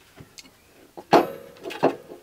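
Kitchen items being handled on a counter: two sharp knocks, the first about a second in with a brief ring, the second near the end.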